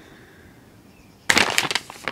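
Paper seed packet being handled, crinkling and rustling in quick crackly bursts that start about two-thirds of the way in.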